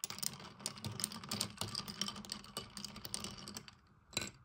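A glass straw stirring ice cubes in iced coffee: rapid clinking and rattling of ice and straw against a ribbed glass tumbler, dying away near the end.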